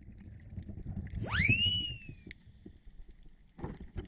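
Underwater ambience with a low rumble. About a second in, one whistle-like tone sweeps sharply up in pitch and then sinks slowly, lasting about a second. A short faint burst comes near the end.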